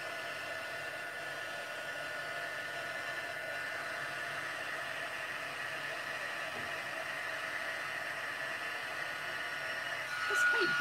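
Handheld embossing heat gun blowing steadily, an even whirring air noise with a faint steady whine, as it melts gold embossing powder on a card panel.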